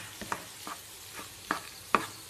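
A spatula scraping and knocking against a non-stick frying pan as potato pieces are stirred and fried, over a faint sizzle. There are half a dozen separate strokes, and the sharpest comes near the end.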